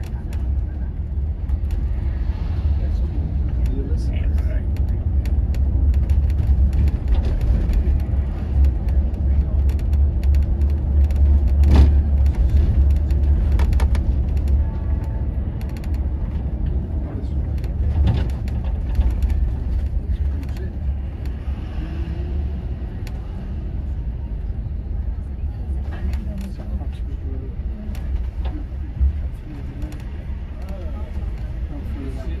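Inside a Volvo B11RT coach on the move: a steady low rumble from the rear-mounted diesel engine and the road, swelling and easing with the stop-start town driving. Two sharp knocks stand out, about twelve seconds in and again about six seconds later.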